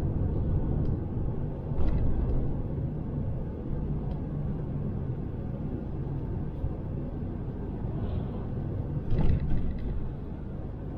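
Steady low rumble of a DAF XF 530 truck's engine and road noise heard inside the cab while driving at reduced speed. Two brief louder sounds come through, one about two seconds in and one near the end.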